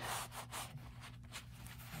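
Faint rubbing of a cloth rag wiping splattered wet cement slurry off a work mat, in a few soft scuffs.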